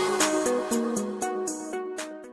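Electronic background music: a run of stepping synth notes over regular high ticks, fading out toward the end.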